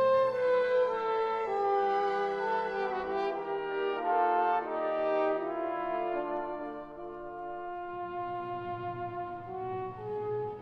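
Two trombones playing a slow, sustained duet in harmony, their long notes moving together in stepwise phrases. The playing grows softer toward the end, and a lower accompaniment comes back in near the end.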